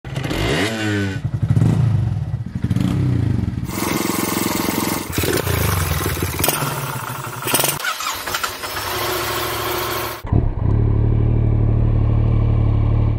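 Motorcycle engines in a string of short clips that change abruptly every few seconds: revving up near the start, then running and blipping, ending on a steady idle.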